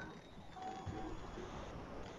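Low background noise on a video-call audio feed, with a faint, brief voice in it.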